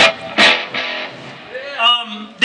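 Electric guitar chords struck sharply at the start and again about half a second in, the second chord left to ring out and fade.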